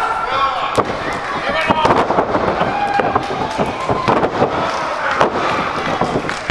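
Wrestling crowd shouting and cheering, cut through by repeated sharp slaps and thuds of bodies hitting the ring mat as a wrestler is slammed down and pinned.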